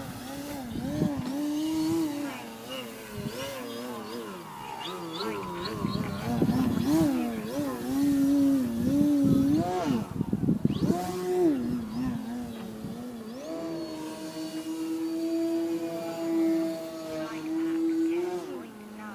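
Radio-controlled Slick 540 aerobatic plane's motor and propeller, the pitch swinging up and down with the throttle during 3D manoeuvres. Near the end it settles into a steady, higher held tone.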